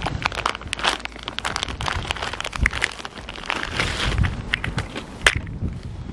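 Clear plastic packaging bag crinkling and rustling in gloved hands as a new drop link is unwrapped, a dense run of irregular crackles.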